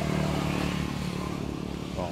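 A road vehicle's engine running nearby, a steady low hum that is a little louder in the first second.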